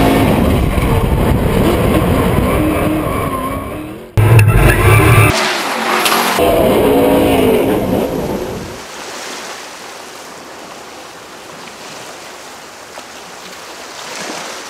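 Ford Mustang RTR drift car's engine revving hard with tyres squealing, a sudden very loud burst about four seconds in. The sound fades away after about eight seconds, leaving a quieter steady hiss.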